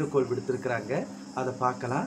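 Crickets chirring steadily and high-pitched in the background, under a woman talking in Tamil.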